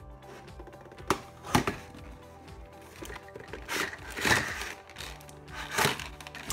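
A cardboard toy box with a plastic window being handled and opened: a couple of sharp knocks, then rustling swells of the packaging.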